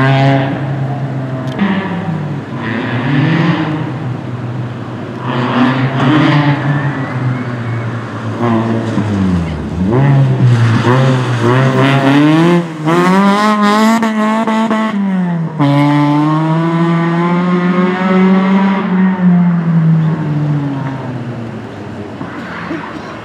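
Peugeot 206 RC rally car's 2.0-litre four-cylinder engine driven hard on a tarmac stage, the revs climbing and dropping again and again with gear changes and braking. About nine seconds in the note falls low as the car slows for a corner, then climbs hard again through several quick gear changes. Near the end the note steadies and fades slightly as the car pulls away.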